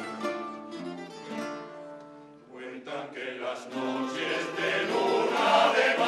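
Male choir singing to a group of guitars and other plucked string instruments. The music thins out and drops in level about two seconds in, then the choir comes back in louder and fuller toward the end.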